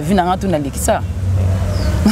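A voice speaking for about the first second, then a steady low engine rumble from a motor vehicle carrying through the pause.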